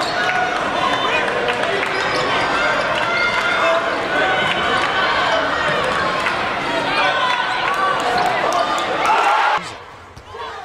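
Live basketball game sound in an arena: the ball dribbling on the hardwood court, with voices in the hall. The level drops sharply near the end.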